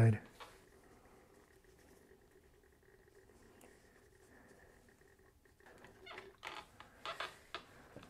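Fabric and a steam iron being handled on an ironing board: a few short rustles and light knocks in the last couple of seconds.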